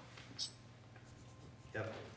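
A short pen-on-paper scratch about half a second in, over quiet room tone with a steady low hum. A voice says 'yep' near the end.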